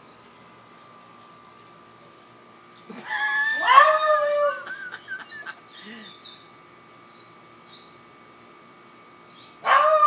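A beagle baying at a treed squirrel: one drawn-out bay lasting about a second and a half, a few seconds in, and a second bay starting near the end.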